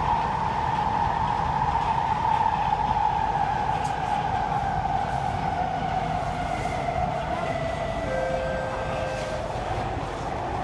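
SMRT C151A metro train's traction motors whining inside the carriage over a steady rumble of the wheels, the whine falling slowly in pitch as the train slows on its approach to a station. Two short, fainter steady tones come in near the end.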